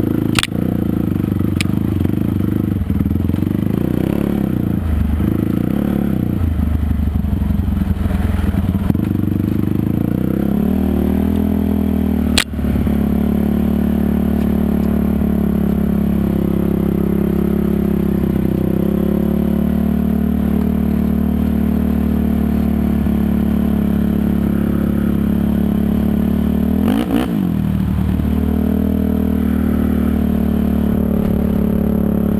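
Honda TRX450R sport quad's single-cylinder four-stroke engine under way. Its pitch rises and falls with the throttle through the first ten seconds, then holds steadier, with a short drop and climb again near the end. Sharp knocks come in the first two seconds and once about twelve seconds in.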